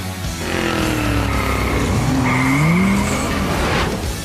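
Cartoon sound effect of a vehicle engine revving, its pitch dipping and then climbing, with tyre squeal, over background music. A rising rush of noise cuts off near the end.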